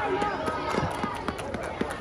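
Indistinct chatter of children and onlookers, with many short, scattered taps and knocks through it.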